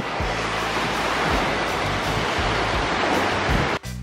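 Small waves washing onto a sandy beach: a steady rush of surf, with background music underneath. The surf sound cuts off abruptly near the end.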